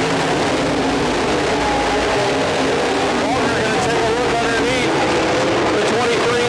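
IMCA Dirt Modified race cars' V8 engines running on a dirt oval, several engines at once, their pitch rising and falling as they accelerate and lift through the turns.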